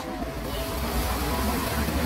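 Black plastic bag rustling as shredded burdock root is tipped into it from a plastic colander, over a steady low rumble.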